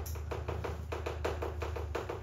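Chalk writing on a chalkboard: a quick, even run of short taps and scrapes, about seven a second, as letters are written, over a steady low hum.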